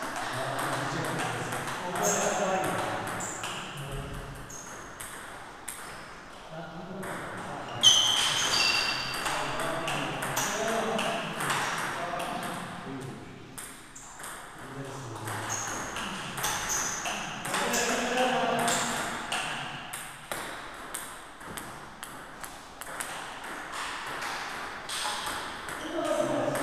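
A table tennis rally: the ball clicking off the paddles and bouncing on the table in quick alternation, broken by short pauses between rallies. Voices of other people in the hall run underneath.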